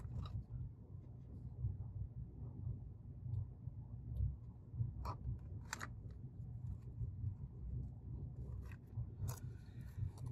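A few sharp light clicks, two close together in the middle and one near the end, over a low steady hum: small parts and hand tools being handled on an electronics workbench while a circuit board is populated.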